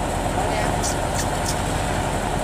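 Large engine of a duck-transport boat running steadily at idle, with the dense chatter of many caged ducks over it and a few short clicks near the middle.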